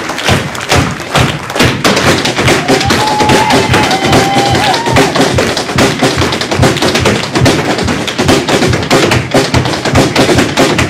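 Rapid stepdance footwork, fast sharp taps and heel thuds on the stage floor, over band accompaniment led by snare drum.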